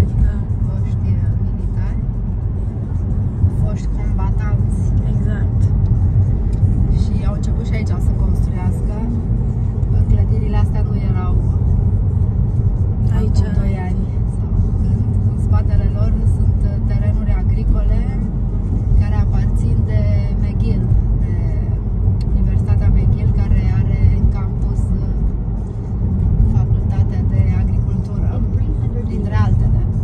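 Steady low road and engine rumble inside a moving car's cabin, with a voice, or singing from the car audio, heard intermittently over it.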